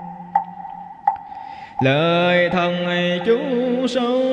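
Vietnamese Buddhist sutra chant with musical accompaniment. A held note fades under evenly spaced knocks, then about two seconds in a louder melodic line with sliding, wavering pitch comes in.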